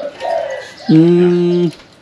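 A man's short hummed "mm" of assent: one steady, level-pitched low tone just under a second long, starting about a second in.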